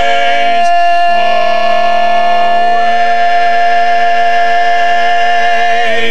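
A barbershop quartet of four men singing a cappella, holding one long chord. The lower voices shift to new notes about a second in, then the chord is held steady until it is released near the end.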